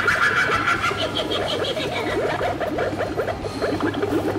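Animated Halloween witch prop playing its recorded voice: a run of rapid cackling laughter.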